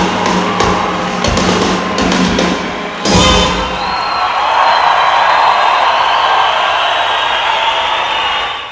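Brass band of sousaphone, trumpets, trombones and snare drum playing the closing bars of a tune, ending on a loud final hit about three seconds in. The audience then cheers and applauds, with a high whistle heard just after the ending.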